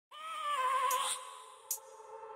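A single high, voice-like note lasting about a second, its pitch wavering, followed by a faint steady tone that lingers to the end.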